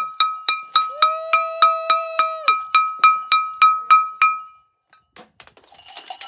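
A small bell rung rapidly and steadily, about four ringing strikes a second on the same pitch, stopping about four seconds in.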